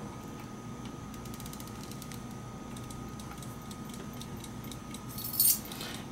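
Sargent & Greenleaf Model #4 time lock's clockwork movement being wound by hand: a run of fine ratchet clicks, then a short, louder metallic jingle about five seconds in.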